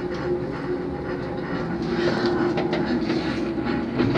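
Aerial ropeway cable car cabin running along its cable into the station: a steady mechanical hum with a few short clicks.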